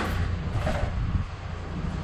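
Steady low background rumble with a faint even hiss above it.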